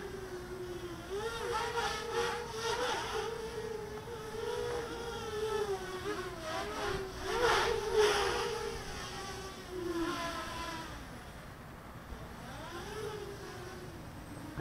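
Quadcopter's brushless motors (2204s) spinning DAL 6040 props: a buzzing whine that wavers up and down with the throttle. There are brief louder surges about seven to eight seconds in, and it drops lower and fainter near the end.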